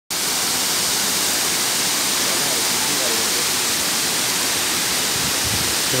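Waterfall pouring down a rock face onto boulders: a steady, loud rush of falling water with no let-up.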